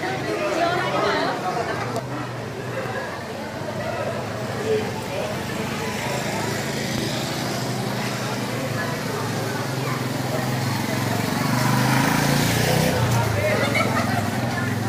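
Babble of many people talking, then street traffic: a motor vehicle's engine hum that grows louder near the end.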